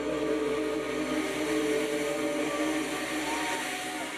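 Live rock band holding one sustained chord, a steady drone of several held tones that eases slightly near the end.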